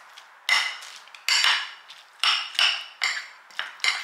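Metal spoon clinking and scraping against a ceramic bowl while mixing chunky guacamole, about eight sharp clinks at uneven intervals, each ringing briefly.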